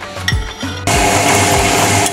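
Background music with a steady beat. About a second in, the steady whirr of an electric wet stone grinder comes in abruptly as its stone rollers grind soaked millet into batter.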